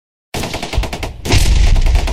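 Rapid machine-gun fire sound effect that starts suddenly a moment in, a fast unbroken stream of shots that gets louder about a second later.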